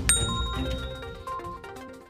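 A notification-bell 'ding' sound effect: one sharp strike with a bright ringing tone that fades over about a second, over background music.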